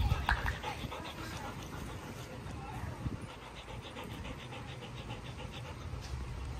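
Brief dog vocalizations right at the start, over a steady low rumble of outdoor air. About three seconds in, a rapid, even ticking chatter runs for roughly two seconds.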